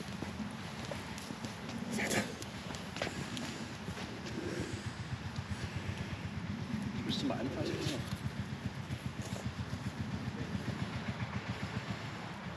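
A faint, indistinct voice over a low, constantly fluttering rumble, with a few light clicks.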